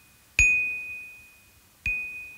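Two single strikes on the same high note of a small tabletop xylophone played with mallets, a second and a half apart, each note ringing out and fading.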